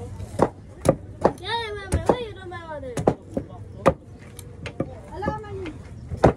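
Large chopping knife striking a coconut's husk: a series of sharp chops, roughly one every half second to a second.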